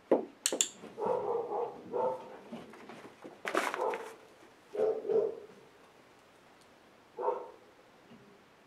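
A sharp click from a training clicker at the start, marking the dog's play-dead hold. The dog then barks about five times, with short gaps between barks.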